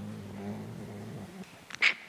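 A man's long, drawn-out hesitation sound "euh" held at one steady low pitch for over a second as he searches for a word, then a short breathy sound near the end.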